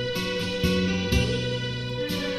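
Instrumental passage of a song: plucked guitar notes struck about twice a second over sustained bass notes and a held higher tone.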